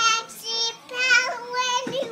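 Young girls singing a nursery song in high child voices, a string of short held notes that waver in pitch.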